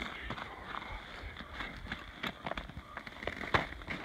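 Footsteps crunching on crusty snow, an irregular run of small crackling clicks, with one sharper click about three and a half seconds in.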